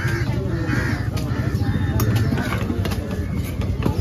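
A large knife cuts through fish steaks on a wooden chopping block, with a few sharp knocks of the blade on the wood. Crows caw over a busy, rumbling background of voices.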